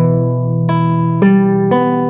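Classical guitar playing the milonga accompaniment in E minor slowly. Single strings are plucked one after another, about four notes a half second or so apart, each left ringing under the next.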